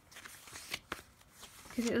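Paper pages of a thick journal being turned by hand: a few short, soft rustles and flicks.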